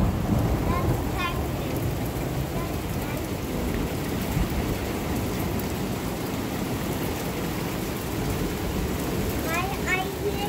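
Small hail and heavy rain falling steadily on a wooden deck and pergola, an even hiss of many impacts at a constant level.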